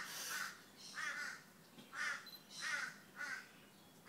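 A bird cawing outside, a series of about five harsh caws under a second apart.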